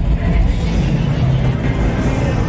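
Open-air festival ambience: crowd voices over a heavy low rumble, with amplified music carrying from the stages.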